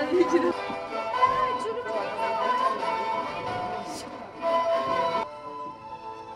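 Background music with sustained instrumental tones and a voice over it. It thins out and gets quieter suddenly about five seconds in.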